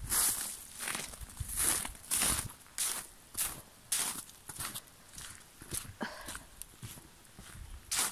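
Footsteps walking at a steady pace over patchy snow and forest floor, a step about every two-thirds of a second.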